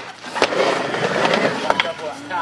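Skateboard wheels rolling on a backyard mini ramp, with a few sharp clacks of the board and trucks hitting the ramp or coping.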